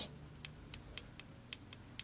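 Automotive fuel injector solenoid clicking open and shut as 12 V is pulsed to it by hand: a run of faint, sharp clicks, about four a second, starting about half a second in.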